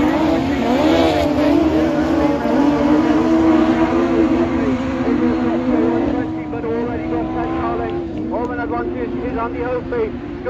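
Several autograss saloon race car engines running hard together as the pack races round a dirt oval, their pitch wavering up and down as the drivers work the throttle. The sound drops a little from about six seconds in as the cars move further off.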